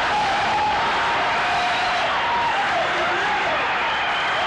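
Large audience applauding and cheering, loud and steady.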